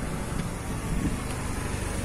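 Steady low rumble of motor vehicle traffic from the road beside the workshop.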